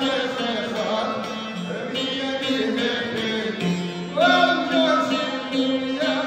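Albanian folk music: a man singing to his own long-necked plucked lute, the plucked notes running under his voice. About four seconds in, the voice slides up into a loud held note.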